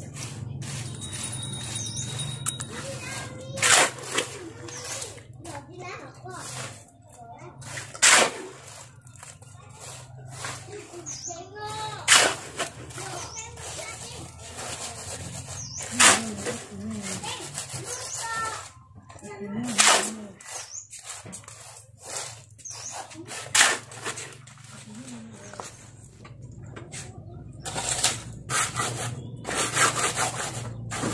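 Hoe scraping through a heap of wet concrete mix on the ground, one sharp stroke about every four seconds, then a quicker run of shovel scrapes near the end, as the concrete is mixed by hand.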